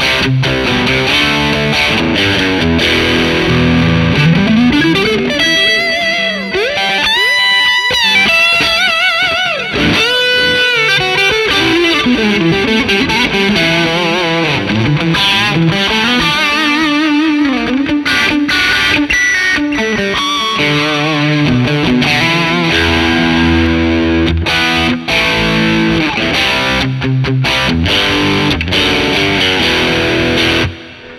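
Electric guitar played through a Wampler Pantheon Deluxe dual overdrive pedal on channel 2, set for a high-gain modern metal sound, into a Fender '65 Twin Reverb amp. Distorted riffs and lead lines, with string bends and vibrato on held notes partway through.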